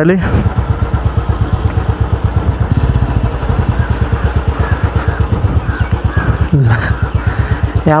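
Motorcycle engine running steadily under way, its exhaust heard as a fast, even beat of low pulses, recorded from the rider's seat.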